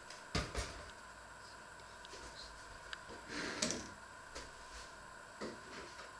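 Household objects being handled and set down on a kitchen counter: two quick knocks about half a second in, a brief scraping clatter a little past the middle, and a softer knock near the end.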